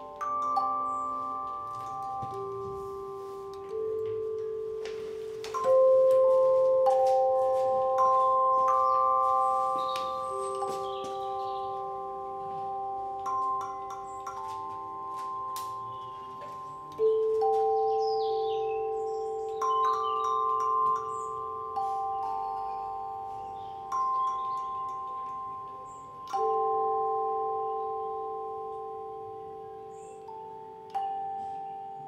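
Tone chimes struck one at a time, each note starting with a soft tap and ringing on as a pure, slowly fading tone. The notes overlap into slow drifting chords, a new one every one to three seconds.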